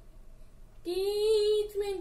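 A boy singing a Hindi Marian hymn solo, without accompaniment. After a pause of almost a second he comes in on a long held note, then moves to the next syllable near the end.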